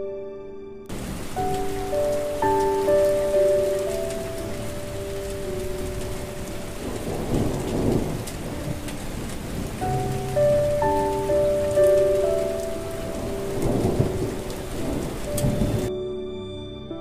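Recorded rain and thunder ambience mixed under a slow, gentle piano melody. The steady rain noise starts about a second in, and a thunder rumble swells up around the middle and again near the end.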